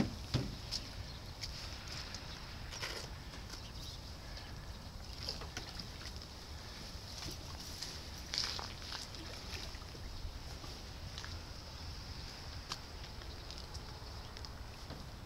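Outdoor ambience of wind rumbling on the microphone over a faint steady hiss, with scattered light taps and clicks, a few sharper ones near the start and about eight seconds in.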